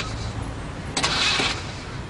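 Pickup truck engine running, with a short burst of hiss about a second in.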